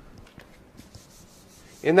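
Marker pen drawing on flip chart paper: a faint scratchy rubbing with a few light ticks. A man's voice begins near the end.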